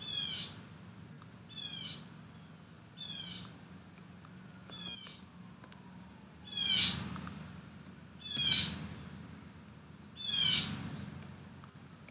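An animal calling over and over: seven short high-pitched calls, one about every one and a half to two seconds, the loudest just past the middle.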